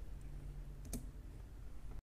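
Faint steady low hum of a small PC's running case and graphics-card fans, with a single sharp click about a second in.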